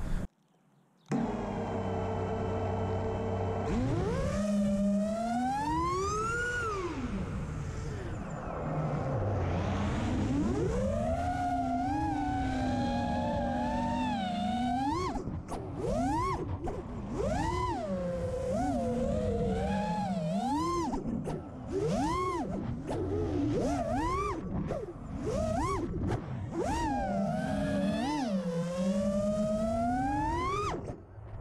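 FPV quadcopter's Xing Cyber 1777kv brushless motors and propellers on 6S, heard through the quad's onboard action camera. After a brief silence they hum steadily at low throttle for a few seconds, then whine in tones that rise and fall sharply with every throttle change, with several short dips where the throttle is chopped.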